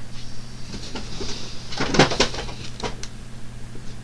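A cat knocking a boxed Funko Pop vinyl figure off a shelf: a short clatter of knocks about two seconds in, followed by a few lighter knocks.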